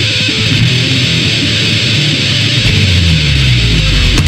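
Grindcore recording: loud, dense distorted electric guitar riffing with bass, playing without a break.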